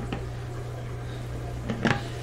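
Hard plastic water-filter housing being picked up and handled: a light knock just after the start and a louder clack near the end, over a steady low hum.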